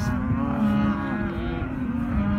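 A cow mooing: one long, low moo with a slightly wavering pitch.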